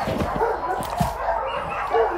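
A dog barking and yipping.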